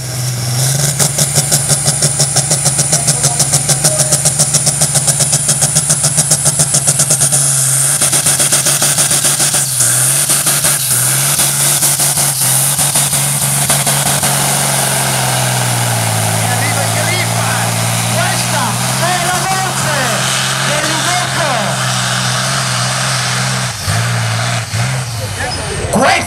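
Loud diesel engine of an IVECO pulling truck running at high revs under load as it drags the weight sled. For the first several seconds it pulses fast, about five times a second, then settles into a steady drone whose pitch steps down and later back up.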